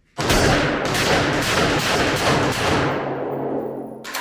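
AR-15 rifle fired in a rapid, continuous string of shots into a pane of bullet-resistant safety glass, the reports echoing in an indoor range. The shooting starts abruptly and dies away near the end.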